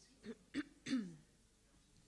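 A person clearing their throat: three short rough bursts within about a second, the last the loudest and falling in pitch.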